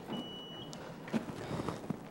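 A steady, high electronic beep lasting about half a second near the start, ending in a brief higher blip, over faint room noise and a few soft knocks.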